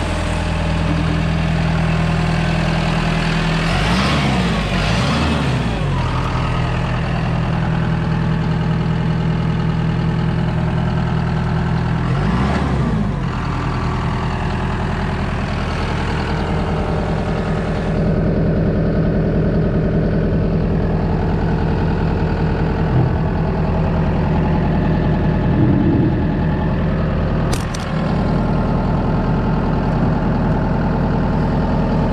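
John Deere 5085E tractor's four-cylinder diesel engine running steadily, its pitch briefly swinging down and back up a few seconds in and again near the middle. A short sharp click near the end.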